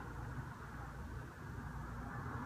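Faint steady room tone: a low background hiss and hum with no distinct sound events.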